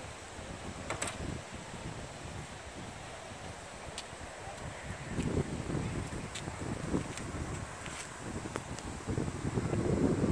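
Wind buffeting the microphone in uneven gusts, strongest about halfway through and near the end, with a few faint clicks.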